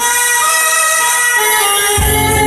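Backing music starting abruptly and loud with a held chord of steady electronic tones, which changes to a new chord about one and a half seconds in.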